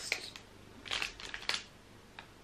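Crinkly plastic-foil wrapper of a digital pregnancy test being handled and torn open, in a few short rustles about a second in.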